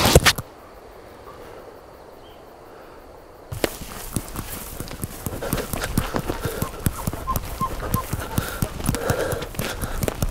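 Footsteps moving quickly through tall dry grass and brush, a dense run of crunching and swishing steps that starts abruptly about a third of the way in, after a quiet stretch. A brief loud knock comes at the very start.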